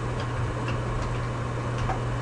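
A few faint, scattered computer keyboard key clicks as a password is typed, over a steady low hum.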